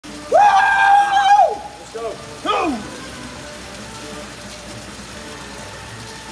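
A man's long wordless shout held on one pitch for about a second, then a shorter shout falling in pitch about two and a half seconds in, as a coach urges on a rider on an air bike. Between and after the shouts there is a steady whoosh from the bike's fan wheel.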